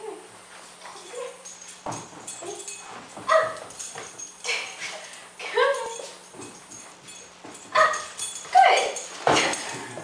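A dog whining and yipping in short calls, several times over, with a dull thump near the end.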